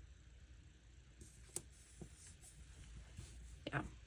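Faint handling of a paper planner: a few light clicks and taps as a sticker is pressed down onto the page, over a low steady room hum.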